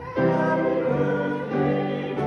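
Congregation singing together with piano accompaniment, in held chords, a new phrase beginning just after the start.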